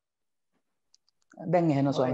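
Silence in a pause of speech, a few faint clicks about a second in, then a voice starts speaking again about a second and a half in.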